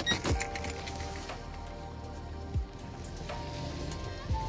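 Soft background music with steady held notes. A few clicks come right at the start as the key goes into the Mercedes W140's ignition lock, and a dull thump follows a little past the middle.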